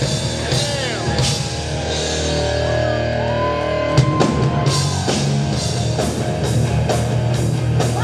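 A rock band playing live, heard from the audience: drum kit, electric guitar and bass in a steady groove, with a sharp, loud drum hit about four seconds in.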